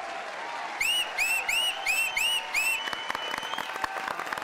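Audience applauding and cheering at the end of a song, with a quick run of six short whistles, each rising then falling in pitch, starting about a second in.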